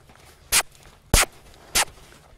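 Three sharp smooching kiss clicks made with the lips, about two-thirds of a second apart, the middle one loudest: the voice cue asking the horse to strike off into the lope.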